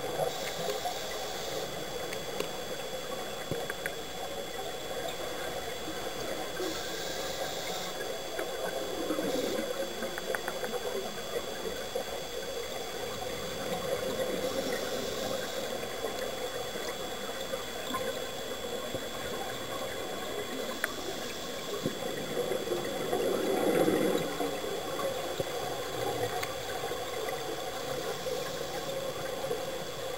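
Underwater recording during a scuba cave dive: a steady hum with the diver's regulator hissing in short bursts every several seconds, and a louder burble of exhaled bubbles near the end.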